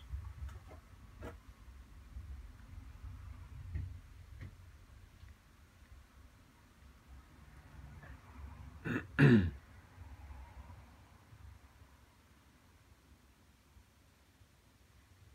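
A man clears his throat once, a short rough rasp falling in pitch, about two-thirds of the way through. Before it there are only a few faint ticks.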